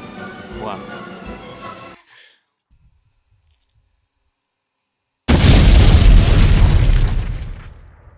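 Background music under the last word of a countdown, cut off about two seconds in. Then near silence, and about five seconds in a sudden, very loud explosion sound effect that dies away over about two seconds.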